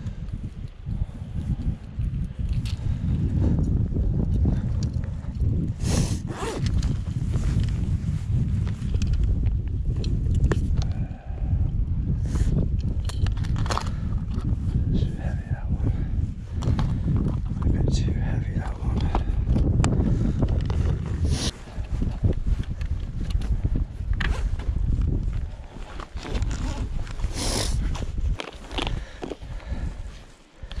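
Wind buffeting the microphone as a steady low rumble, over scattered clicks and rustles of gloved hands handling fishing line and lures. Near the end, a plastic tackle box of soft-plastic lures is handled.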